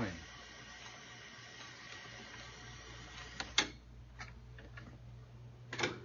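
Sony APR-24 multitrack tape recorder running, its reels turning with a steady low hum and a faint whir. Two sharp clicks come about three and a half seconds in, after which the whir drops away, and another short burst of clicks comes near the end.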